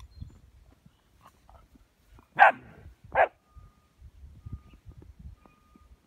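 German Shepherd barking twice in quick succession during play, two short barks near the middle.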